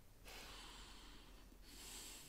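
Near silence, with a person's faint breath, a soft hiss lasting about a second and a half.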